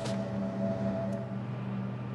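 A steady low drone made of several held tones, with a higher tone that fades out about two-thirds of the way through.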